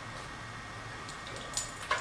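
Quiet room tone, a steady low hiss, with a few faint light ticks near the end.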